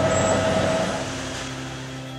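Steady, noisy outdoor rumble of construction-site machinery, fading about halfway through as a soft held background-music chord comes in.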